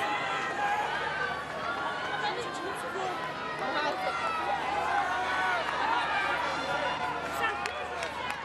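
Crowd of spectators at a rugby ground chattering and calling out, many voices overlapping with no single voice standing out.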